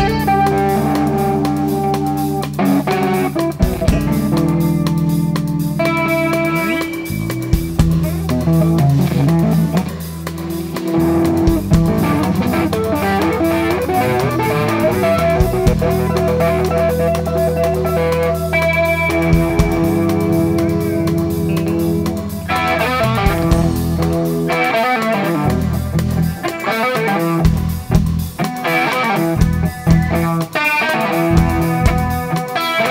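Live blues-rock trio playing an instrumental jam: electric guitar lead with long held notes over bass guitar and drums, the guitar turning to quicker, choppier phrases in the last third.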